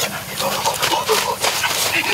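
Boys' wordless voices exclaiming over a wood fire crackling with many sharp pops and clicks under a cooking stone.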